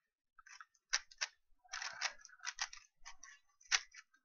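A 3x3 speedcube being turned rapidly during a solve: the plastic layers make quick, irregular clicking and clacking in bursts of fast turns. The sharpest click comes near the end.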